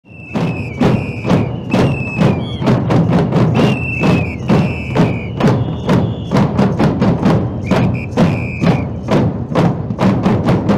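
A marching drum group beating a steady rhythm on drums, several strokes a second, fading in at the start. A high held tone sounds over it in repeated short blasts.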